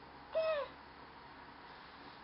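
A 10-month-old baby's short, high coo about half a second in, a single vocal sound that rises and then falls in pitch.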